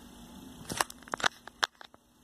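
Several light clicks and small knocks of metal brushless-motor parts (rotor and end cap) being handled on a desk, clustered in the second half.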